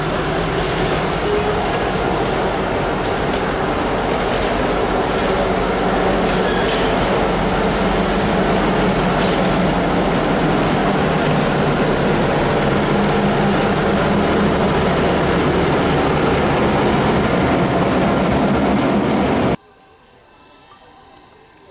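Chicago and North Western bi-level passenger coaches rolling past close by, a steady heavy rumble of wheels on rail with occasional sharp clacks. The EMD F7A diesel locomotive's engine joins in more strongly in the second half as it draws near. The sound cuts off suddenly just before the end.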